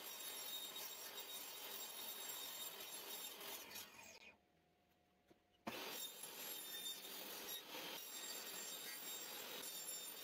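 Benchtop table saw cutting through a thin wooden kumiko lattice panel, heard faintly as a steady hiss, broken by a second or so of dead silence about four seconds in.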